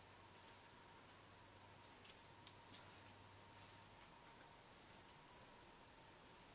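Near silence: room tone, with a few faint clicks from hands pressing clay onto a foam base. One sharper click comes about two and a half seconds in.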